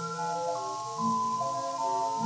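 Early acoustically recorded 78 rpm disc of a light orchestra playing a melody line of held notes that change about every half second. A steady surface hiss runs underneath.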